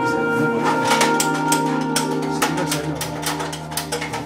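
Background music: held notes that change about every second, over sharp percussive hits.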